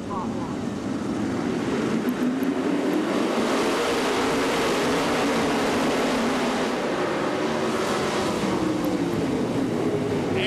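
A full field of winged 410 sprint cars with V8 engines on the throttle together for the start. The combined engine sound swells about a second in and holds loud, with the pitches wandering as the cars rev.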